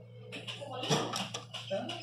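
A Jack H5 electronic industrial sewing machine, just switched on, gives a low steady hum, with faint clicks and a knock about a second in as its control panel is handled.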